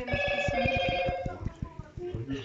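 A steady electronic tone made of several pitches held together, lasting about a second and a half and then stopping, over a rapid run of low clicks.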